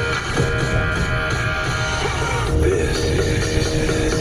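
Music from a car radio, with guitar, playing inside a moving car's cabin over a steady low rumble.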